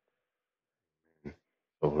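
Silence, broken a little past a second in by one brief, faint vocal sound. Speech begins near the end.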